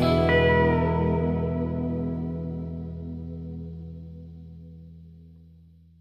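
Music: a guitar chord played through echo and chorus effects rings out and fades slowly away over about six seconds, the close of the piece.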